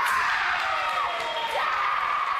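A fencer's long, high-pitched scream after a touch in a bout, the kind of cry fencers let out to release nerves or celebrate a point. It sags slightly in pitch, breaks about one and a half seconds in, and a second long cry follows.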